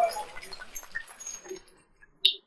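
Spectators' vocal reaction to a billiards shot tailing off, followed by a few scattered claps and light clicks that die away about three-quarters of the way through.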